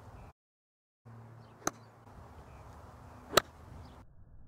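Two short, sharp clicks about a second and a half apart, the second much louder, over a faint steady low hum.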